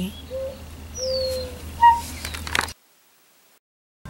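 A songbird calling: a few short whistled notes and chirps, one of them a falling whistle, over a low steady hum. A few clicks follow, then the sound cuts to silence after nearly three seconds.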